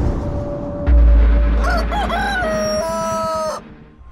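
A rooster crowing once: the call wavers, then holds one long steady note and cuts off suddenly. It sits over a heavy boom that starts about a second in, with dark cinematic music.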